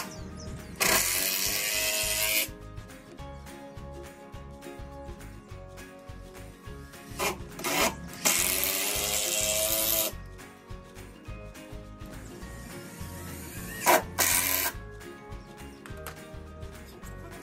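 Power drill driving pocket-hole screws into wood in several bursts. The motor whine rises at the start of each run; the two longest runs last about two seconds each and the others are short. Background music plays throughout.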